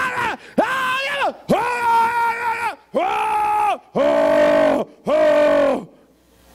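A man's voice through a microphone and PA, shouting six long, loud, wordless cries one after another, each held for about a second with its pitch arching up and falling away. It is a mock imitation of an overexcited preacher's loud shouting tone.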